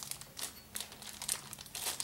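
A toy's plastic blind-bag wrapper crinkling as it is handled and pulled open, an irregular run of small crackles that bunch up near the end.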